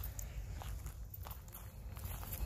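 Faint footsteps of a person walking on a woodland trail, a few soft, scattered steps over a low steady rumble.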